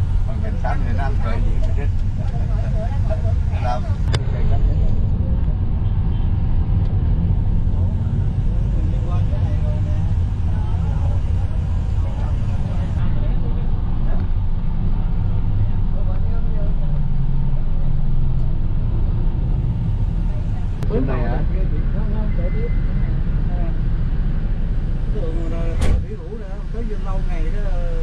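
Steady low engine and road rumble from riding in a vehicle through city traffic. Brief voices are heard in the first few seconds and again about 21 seconds in.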